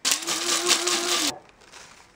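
Electric blade coffee grinder chopping whole coffee beans: a steady motor hum under a loud grinding rattle that starts suddenly and cuts off after about a second and a quarter.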